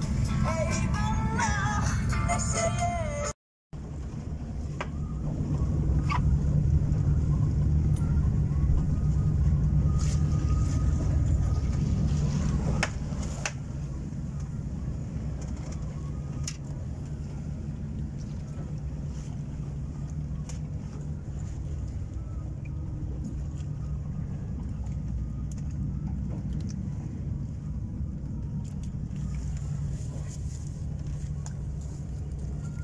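A small boat's engine running with a steady low drone. It is louder for the first several seconds, then settles a little quieter, with a few light knocks. A short stretch of music at the start cuts off abruptly before the engine sound.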